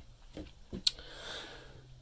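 Dometic foot-pedal RV toilet flushing: a sharp click a little under a second in, then about a second of water rushing into the bowl, over a faint low steady hum.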